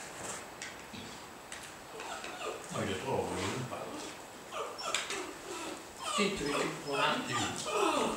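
Small dog whining and whimpering, in a couple of bouts, with low voices alongside.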